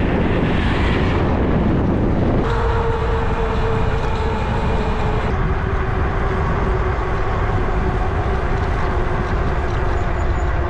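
Wind rushing over the microphone of a moving electric bike, with a steady whine from its electric motor that comes in a couple of seconds in and drops a little in pitch about halfway through. An oncoming car passes in the first two seconds.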